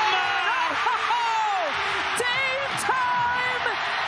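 TV basketball broadcast audio: a play-by-play announcer yelling excitedly over a cheering arena crowd, the reaction to a game-winning shot at the buzzer.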